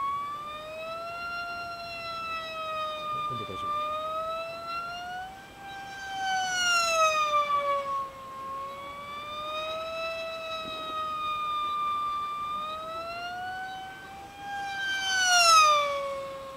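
Electric motor and propeller of an F5D pylon racing model plane (PL 1.1 3300KV brushless motor, 5×5 prop) flying laps: a high whine whose pitch wavers up and down as it circles. It swells loudest on close passes about six seconds in and again near the end, dropping in pitch as it goes by.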